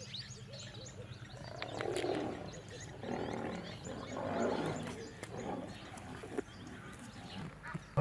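Male lions growling in several rough swells about two, three and four and a half seconds in, with small birds chirping throughout.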